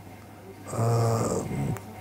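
A man's drawn-out hesitation sound, a steady "eeh" or "mmm" on one flat pitch lasting about a second, in the middle of a sentence.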